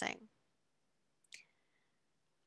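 The last syllable of a woman's speech, then near silence broken by one short, faint click about a second and a half in.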